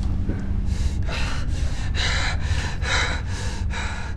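A man breathing hard in quick, rasping breaths, about two to three a second, over a low steady hum.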